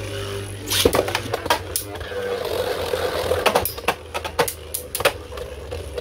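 Two Beyblade Burst spinning tops whir as they travel across a plastic stadium floor. They strike each other several times, with sharp clacks about a second apart.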